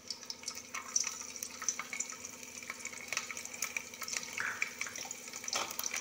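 Chopped garlic frying in a little hot refined oil in an aluminium pot: a soft, irregular sizzle of small crackles and pops.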